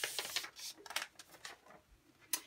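Paper receipt being folded by hand: a quick run of crackles and rustles at first, then a few scattered soft crackles.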